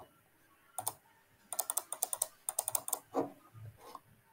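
Computer keyboard typing: a single keystroke about a second in, then two quick runs of key clicks between about 1.5 and 3 seconds.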